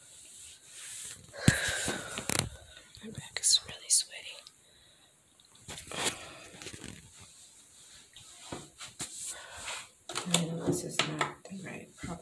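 A quiet whispered voice with rustles and knocks from a handheld phone being moved around; a sharp click about one and a half seconds in is the loudest sound.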